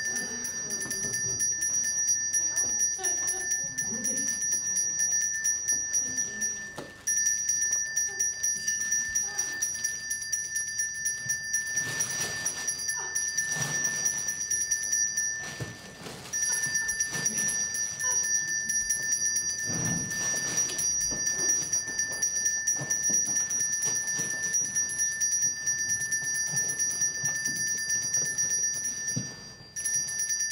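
A bell rung over and over, about three or four strokes a second, keeping one steady ringing pitch. It runs in three long stretches, with short breaks about 7 and 16 seconds in, and stops just before the end.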